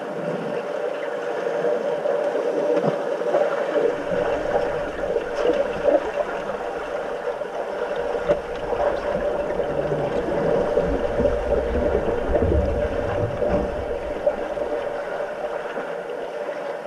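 Underwater pool noise picked up by a submerged camera: a steady hum with bubbling and churning water from finned swimmers kicking and diving. A deep rumble comes in about four seconds in, is strongest in the last third, and eases off near the end.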